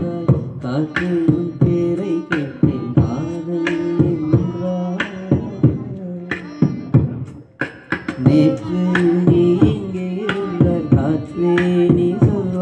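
Live vocal beatboxing into a microphone, mouth-made drum hits and snares in a quick steady rhythm, with a violin playing long held notes alongside. The beat thins out briefly a little past the middle, then picks up again.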